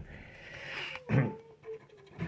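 A coin scraping over a lottery scratch card, with a short, loud grunt-like voice sound about a second in.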